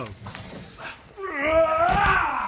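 Rustling noise of movement on gym crash mats, then from a little over a second in a person's long, drawn-out yell that wavers up and down in pitch.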